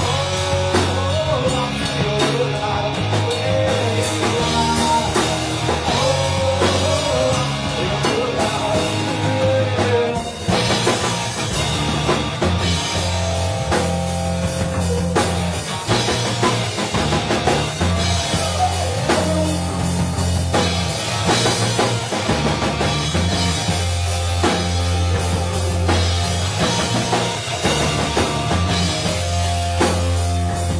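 Live rock band playing loud: electric guitar, bass guitar and drum kit. A wavering lead line sits on top for about the first ten seconds, then the band carries on without it.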